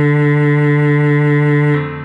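Cello holding one long bowed note, which stops near the end and dies away.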